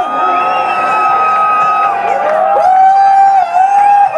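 Electronic dance music from a DJ set, with a crowd cheering and whooping over it; long held tones that glide up into pitch run through the whole stretch.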